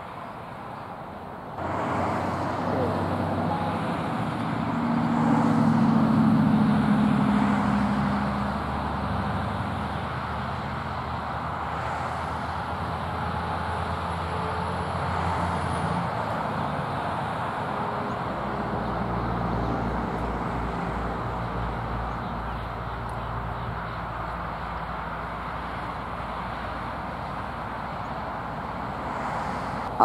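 Road traffic noise: an engine hum comes in suddenly about two seconds in, swells for a few seconds, then settles into a steady rumble.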